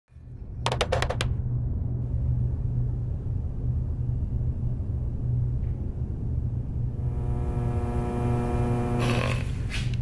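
A steady low rumble throughout, with a quick run of five clicks about a second in. A steady pitched hum joins in for a couple of seconds near the end.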